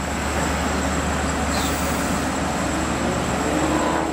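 A loud, steady rushing hiss of air from the stopped LIRR C3 bi-level train's pneumatic system, swelling in at the start and fading out after about four seconds.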